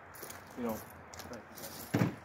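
Light metallic clinking of a pistol being handled, then one sharp knock near the end as it is set down on a folding table.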